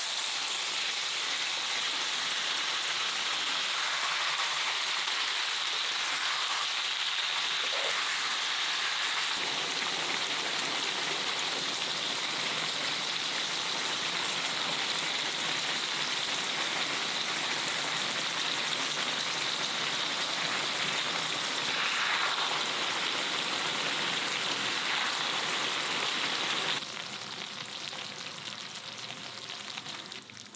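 Spicy marinated duck, rice cakes and vegetables sizzling in a wide pan on a portable gas stove, a steady hiss that drops in level near the end.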